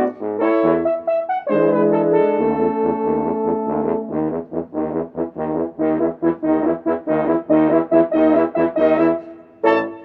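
French horn quintet, multitrack-recorded by one horn player, playing in harmony. Held chords give way to a quick run of short, detached notes, and the piece ends near the close on one short final chord that dies away.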